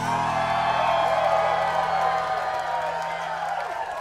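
A live band's final chord ringing out and fading over about three seconds, after the closing hits, while the crowd cheers and whoops.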